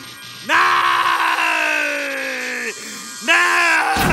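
A cartoon villain's long, drawn-out cry, sliding slowly down in pitch over background music, followed near the end by a second cry.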